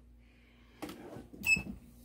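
MPRESS 15x15 heat press being pulled shut by its handle onto a hoodie: a soft rustle about a second in, then a short high-pitched squeak from the press arm as the platen comes down.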